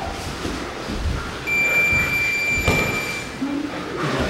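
Electronic round timer beeping once, a single high steady tone held for nearly two seconds, marking the end of a sparring round. Underneath are the rustle and thuds of grapplers moving on the mats.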